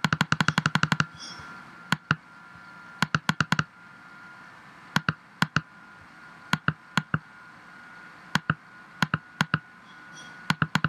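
Computer mouse button clicking: a fast run of about a dozen clicks in the first second, then single clicks and short groups of two to four, as on-screen buttons are pressed over and over. A faint steady high tone runs underneath.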